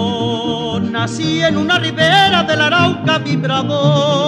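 Mariachi ensemble playing an instrumental passage: a held chord with vibrato, then from about a second in a quick, busy melody over a steady low bass-and-guitar rhythm.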